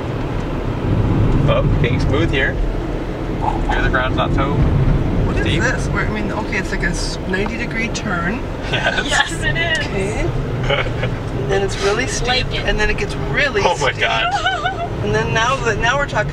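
Cabin noise of a Hyundai Accent climbing a steep mountain road: a steady low engine and road rumble, with voices talking over it.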